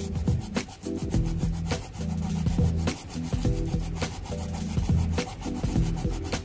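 Repeated scratchy rubbing strokes of a sanding sponge against a small model-car part, heard over background music.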